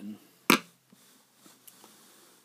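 A single sharp click about half a second in, followed by faint room tone.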